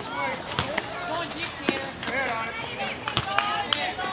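Several people's voices chattering and calling in the background, fairly high-pitched, with a few sharp clicks among them.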